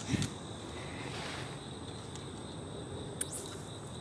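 Steady chorus of crickets, an even high-pitched drone. A brief sound comes just after it begins, and a short rising high sweep about three seconds in.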